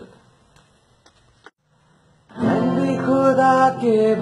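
Acoustic guitar starting a song: after a couple of seconds of near-quiet with a few faint clicks, a chord is strummed and rings on, and a man begins singing over it near the end.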